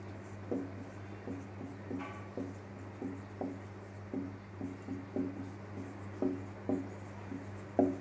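Marker writing on a whiteboard: a string of short strokes, about two a second, as letters are written out, over a steady low hum.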